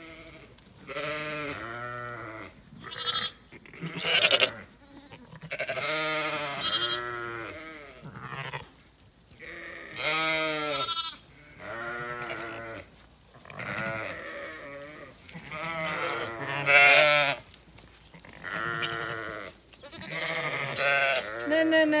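Zwartbles ewes and lambs bleating, a string of overlapping wavering calls about a second each, some deep and some higher-pitched, coming every second or two.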